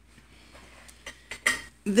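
A few light knocks and clicks of things being handled and moved on a wooden tabletop, after a quiet first second. A woman's voice starts just before the end.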